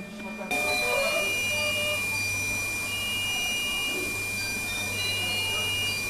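Neonatal intensive-care ward equipment: a steady high electronic tone and a higher beep that sounds on and off, from patient monitors and incubators, over a low machine hum. It begins suddenly about half a second in.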